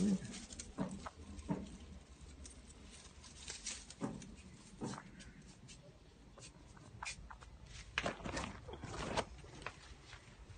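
Rustling and brushing of leafy potted plants as they are parted by hand, with a young chicken stirring among them: scattered short rustles and clicks, and a louder cluster of them about eight to nine seconds in.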